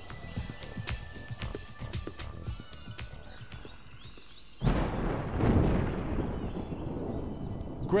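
Small birds chirping, then about halfway through a sudden loud gobble from an eastern wild turkey gobbler that trails off over a few seconds.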